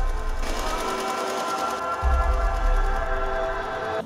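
Horror film soundtrack: a sustained, eerie chord held steady, with a deep low rumble at the start and another about two seconds in, and a fast, faint ticking high above it.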